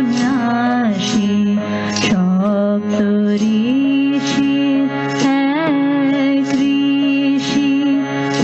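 A woman singing a slow, ornamented devotional melody, accompanying herself on a keyboard that holds steady sustained notes under her voice.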